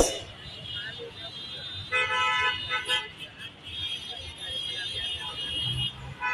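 Vehicle horns honking in busy road traffic, with a long steady honk about two seconds in and more horn tones after it. A sharp click comes right at the start.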